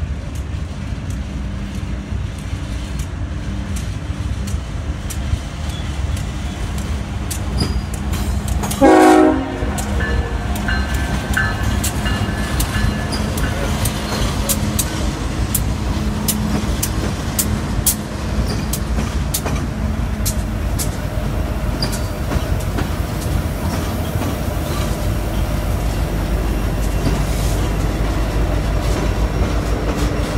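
Union Pacific freight train's diesel locomotives passing close by with a steady low engine rumble. There is a short horn toot about nine seconds in, and from then on the wheels click over the rail joints as the units roll past.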